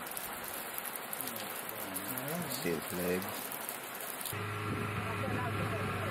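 Water pattering and splashing in a crackly, rain-like patter, with a short spoken word about two seconds in. A little after four seconds it cuts off, replaced by a steady low hum.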